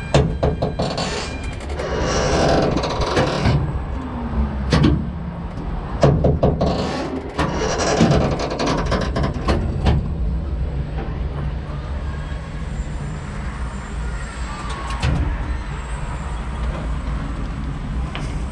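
A Sunkid-Heege Jungle Loop gondola ride in motion: a steady low rumble, with bursts of rattling and rushing noise from about half a second to four seconds in and again from about six to ten seconds. After that it settles to a steadier rumble.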